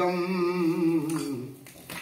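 A man chanting a Sanskrit fire-offering mantra in a drawn-out, sung tone. He holds the closing "svāhā idam" on one note, which fades away about one and a half seconds in. "Svāhā" marks each offering poured into the havan fire.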